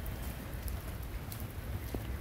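Steady rain falling: an even hiss over a low rumble.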